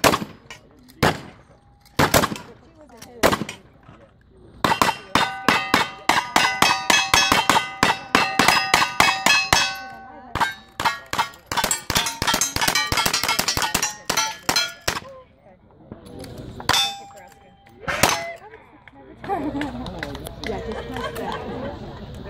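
Gunfire from two cowboy action shooters at steel targets. A few spaced shots open, then a long, rapid string of shots runs for about ten seconds, each hit answered by steel plates clanging and ringing at several different pitches. A few scattered shots follow near the end.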